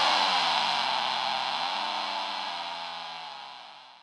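The closing tail of a dark psytrance track: a synth wash with shifting, sliding tones rings out and fades away steadily, cutting to silence right at the end.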